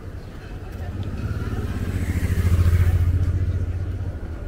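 A motor vehicle's engine passing close by, with a low pulsing note that grows louder to a peak about two and a half seconds in, then fades.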